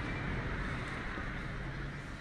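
Steady outdoor urban background noise, an even low hum with no distinct events.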